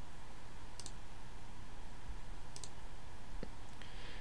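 A few sharp clicks of a computer mouse, spaced a second or two apart, over a faint steady hum.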